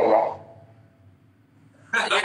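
A voice says a short 'ya?' at the start, then about a second and a half of near silence before talk resumes near the end.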